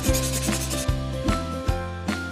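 Marker rubbing across a whiteboard as a circle is drawn, over background music with a low bass line.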